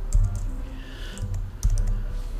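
Computer keyboard typing: a short run of separate keystrokes, a few quick ones near the start and a cluster near the end.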